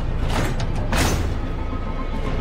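Tense, dark film score: a steady low drone with a rush of noise that swells and peaks about a second in, then fades.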